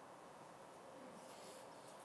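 Near silence: faint steady background noise, with a distant low bird call about half a second in and a brief soft rustle around a second and a half.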